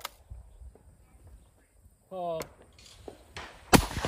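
A single loud shotgun shot near the end, the first shot at a true pair of clay targets, with a short echoing tail. About two seconds in there is a brief called command for the targets, and a faint click at the very start as the gun's action closes.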